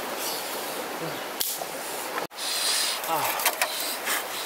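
Steady rush of running stream water with a few short, low, falling calls over it. The sound drops out for an instant a little past halfway, then the water comes back a little louder.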